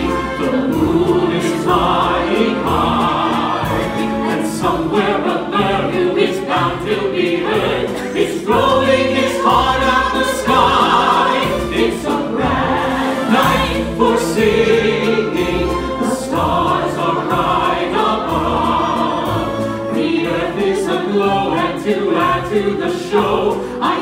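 An ensemble of opera singers singing together, accompanied by a small live orchestra, heard from the audience.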